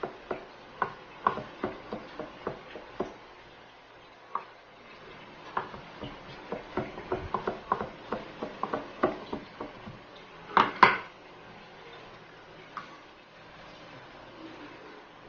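Kitchen knife chopping cooked chicken liver on a wooden cutting board: irregular taps of the blade on the board, a short run at the start and a quicker run through the middle, with two louder knocks about three quarters of the way through.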